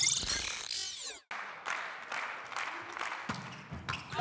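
A short whooshing transition sound effect with falling sweeps, ending abruptly about a second in. It is followed by the steady noise of an indoor sports hall, with a few scattered knocks.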